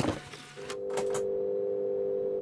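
Logo intro sound effect: a few quick swishes, then a steady electronic hum of several held tones.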